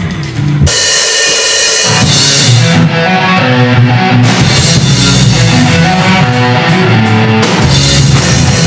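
Hard rock band playing live on electric guitar, bass guitar and drum kit. The full band comes in loud with a cymbal crash about half a second in, then plays on steadily.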